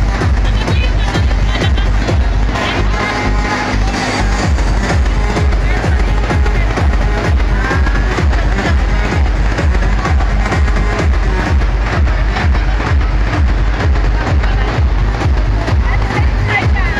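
Electronic dance music with a steady bass beat, about two beats a second, with people's voices underneath.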